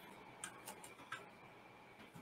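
Four quiet computer keyboard key clicks in the first half, spaced a quarter to a third of a second apart, while a command is entered at a command prompt.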